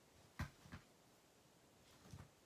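Near silence, broken by a sharp click about half a second in and a softer one just after: a metal Crop-A-Dile hole punch being handled.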